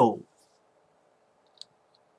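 A man's spoken phrase ending, then near quiet room tone with one faint, very short click about one and a half seconds in.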